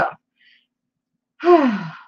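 A woman sighs once, a breathy voiced sigh falling in pitch, about a second and a half in.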